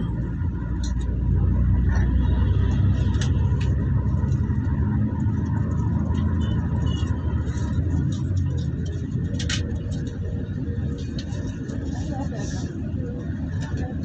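Engine and road rumble heard from inside a moving vehicle, with small rattles and clicks. It swells about a second in and eases off after about nine seconds.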